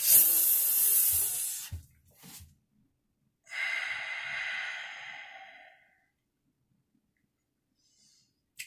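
A man hisses loudly in pain for almost two seconds as hydrogen peroxide stings an open cut on his knuckle. About three and a half seconds in comes a long breathy exhale that fades away.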